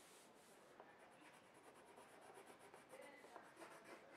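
Faint scratching of a coloured pencil shading on paper, in quick repeated strokes.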